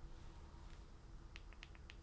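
Near silence: faint room tone with a low hum, and a few faint short clicks about one and a half seconds in.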